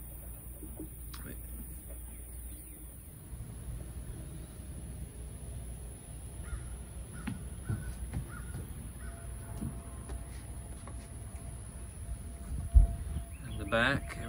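Outdoor background with faint bird calls and a low rumble of camera handling, with one sharp thump near the end.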